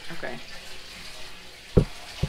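Steady hiss of wet, freshly washed mopane worms sizzling in a pan back on the fire, with a short low knock near the end.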